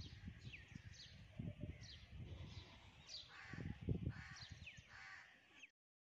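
Birds calling outdoors: several harsh caws and a run of short, falling whistle calls, over low, gusty rumbling of wind on the microphone. The sound cuts off suddenly near the end.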